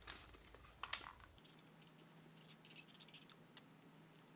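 Faint rustling and small clicks of paper and a roll of clear tape being handled, with a slightly louder crackle about a second in.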